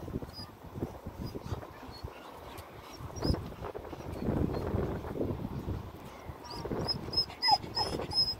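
Short, high-pitched animal squeaks, a few in quick succession near the start and a longer run toward the end, over low rumbling noise.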